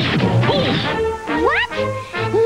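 Cartoon action sound effects, crashing and whacking, with several quick rising and falling glides in pitch, over background music.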